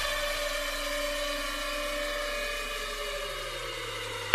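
Beatless breakdown of an electronic dance track: sustained synth pad chords held and slowly fading, with a low bass note coming in near the end as the build-up to the drop.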